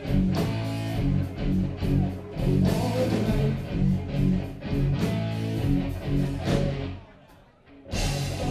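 Live rock band playing: electric guitar, bass and drums with a steady beat. Near the end the music stops suddenly for about a second before starting again.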